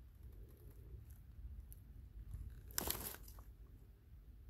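Faint footsteps crunching in dry leaf litter, with one louder, short crunch about three quarters of the way through, over a low steady rumble.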